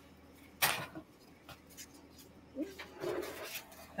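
A single short, sharp clack about half a second in, from the cookie tray being handled in the kitchen, then a fairly quiet room with faint, indistinct sounds near the end.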